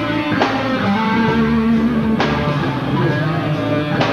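Live reggae-ska rock band playing, led by electric guitar over bass and drums, with sharp hits about half a second in and again about two seconds in.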